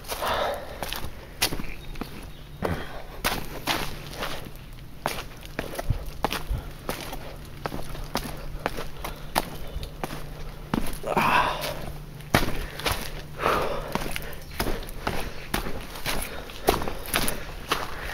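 Footsteps of a hiker walking downhill on a dirt trail covered with fallen leaves: a steady run of irregular steps.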